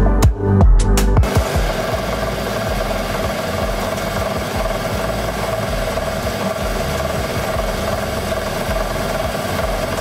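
Myford lathe running steadily as its tool cuts a metal sleeve, an even machining noise with a constant tone. It follows about a second of electronic music beats.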